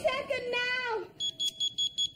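A voice briefly, then about a second in a high-pitched electronic alarm starts beeping, pulsing rapidly at about five beeps a second.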